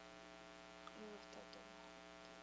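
Near silence filled with a steady electrical mains hum from the sound system, with a faint brief sound about a second in.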